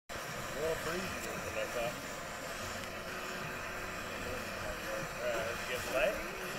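Faint talking, in short snatches about a second in and again near the end, over a steady background noise.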